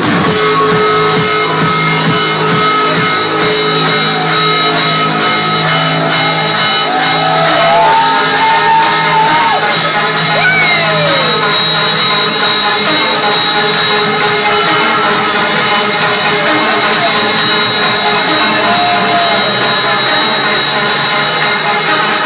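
Loud electronic dance music from a DJ set over a club sound system: a steady bass line under long held synth tones. Scattered shouts come from the crowd around the middle.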